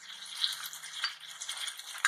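Vegetables in a tomato masala cooking in a pan on a gas stove, giving a steady fine sizzle and crackle with a couple of faint ticks.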